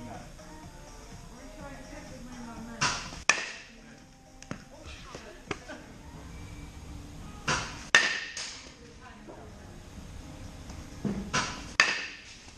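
A bat striking machine-pitched balls in a batting cage, three times about four seconds apart. Each hit is a quick cluster of sharp cracks about half a second long.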